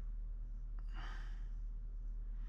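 A single breathy exhale, a short sigh lasting about half a second, about a second in, over a steady low electrical hum.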